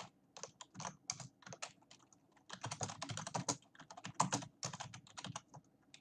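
Typing on a computer keyboard: an uneven run of key clicks as a short phrase is typed out, with the keystrokes coming faster in the middle.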